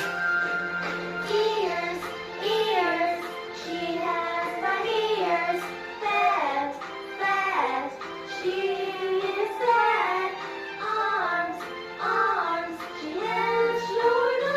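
A child singing a simple children's song over a music backing track, in short phrases of a couple of seconds each.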